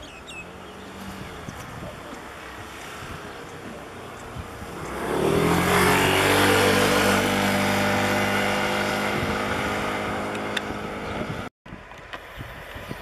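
Diesel-electric locomotive engine throttling up about five seconds in. Its note rises, then holds steady and loud as it works, and the sound cuts off abruptly just before the end.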